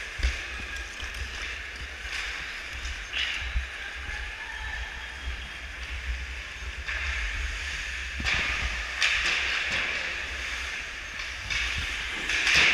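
Ice hockey skates carving and scraping on rink ice: a steady hiss with louder scrapes about three seconds in and again from about eight seconds on. Under it runs a low rumble from the skater-worn GoPro moving.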